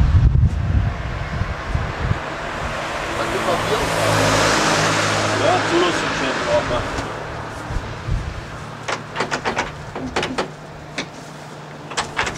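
A road vehicle passing by, its engine and tyre noise swelling to a peak about four seconds in and then fading. Near the end comes a short cluster of sharp clicks and knocks.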